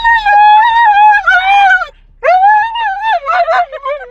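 A dog howling inside a car: one long wavering howl of nearly two seconds, a second shorter howl starting a little after two seconds in, then a run of quick, short yowls.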